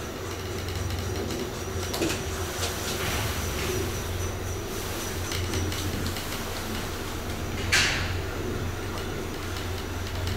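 Otis elevator car travelling down between floors: a steady low hum with a faint high whine and light clicks and rattles from the car. There is a sharper click about two seconds in and a short sharp noise about eight seconds in.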